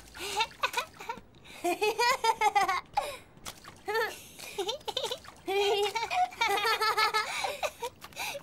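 Young girls laughing and giggling in high voices, with splashes of rubber boots stamping in a muddy puddle near the start.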